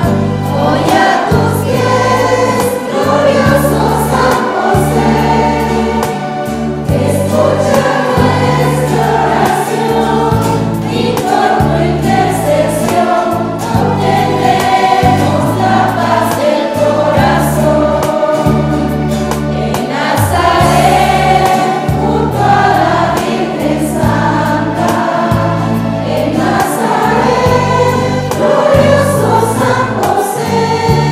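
Church choir singing a hymn to Saint Joseph, the voices carried over held low accompaniment notes that change every second or so.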